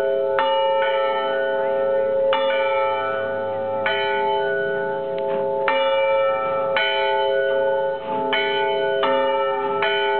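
Church tower bells ringing, struck about eight times at uneven intervals, each stroke's tone ringing on and overlapping the hum of the ones before.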